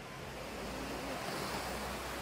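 Surf washing onto a sandy beach in a steady, even rush of noise, with a low wind rumble on the microphone from about a third of a second in.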